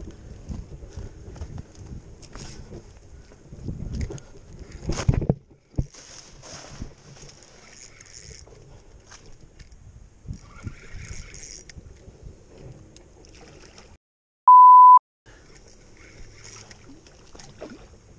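Rustling, scraping and knocking of someone clambering along a fallen tree trunk, with a loud knock about five seconds in. Near the end, the sound cuts out for a single steady censor bleep about half a second long.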